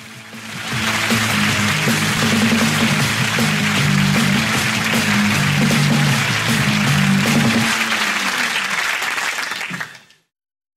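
Studio audience applauding over the show's closing theme music. The applause swells in during the first second; the music stops about two seconds before the end and the applause fades away just after.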